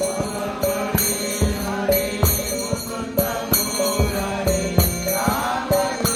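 A man chanting a devotional mantra with hand cymbals striking a steady beat about twice a second over a held drone.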